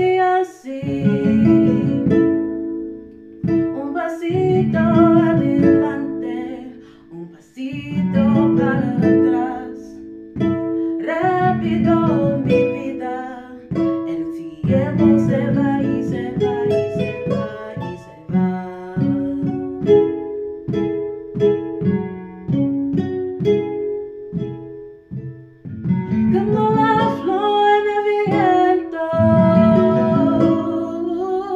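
Four-mallet music played on a MalletKAT Grand electronic mallet controller: quick runs of struck notes over held low chords, the electronic voice sounding like plucked strings, with brief pauses between phrases.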